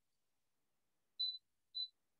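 Two short, high-pitched electronic beeps about half a second apart, in otherwise dead silence.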